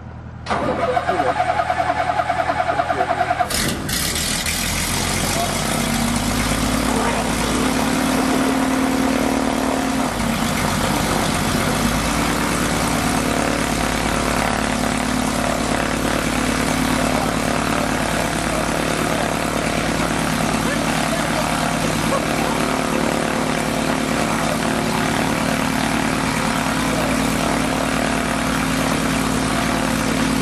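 Zenith Zodiac 601XL light aircraft's engine turned over by its starter for about three seconds, then catching and settling into a steady idle.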